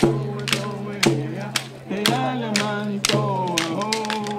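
Traditional Native Californian song: voices singing a chant-like melody over a steady percussion beat of about two strikes a second.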